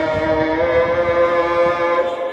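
A voice chanting an Islamic call or recitation in long, held melodic notes that step gently in pitch.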